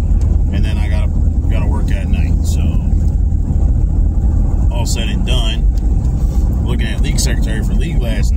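Steady low rumble of a car's road and engine noise heard inside the cabin, with a few short bits of a man's voice.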